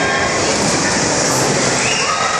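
A steady, loud wash of mechanical noise with faint children's voices mixed in: the din of a busy indoor play hall with electric bumper cars running.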